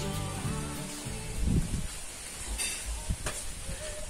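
Background music fading out within the first second, then synthetic fabric rustling and crinkling as it is spread and smoothed on a workbench, with a few soft knocks.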